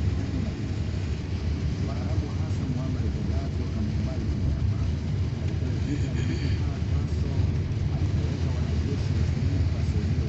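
Steady low rumble of a moving vehicle heard from inside the cabin, engine and tyres running over a dirt road. A brief high-pitched sound comes about six seconds in.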